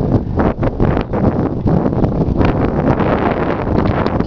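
Wind buffeting the camera's microphone: a loud, low rumble that rises and falls in gusts.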